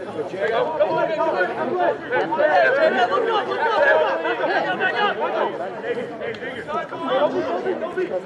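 Many voices shouting and calling at once, players and onlookers at a rugby match as a tackle goes in and a ruck forms, loudest in the middle.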